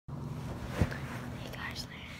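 A person whispering close to a phone's microphone, with a sharp knock of the phone being handled a little under a second in.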